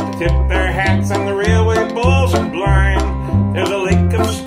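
Old-time string band playing: upright bass thumping out alternating notes about twice a second under strummed acoustic guitar and picked banjo, with musical spoons clicking in time.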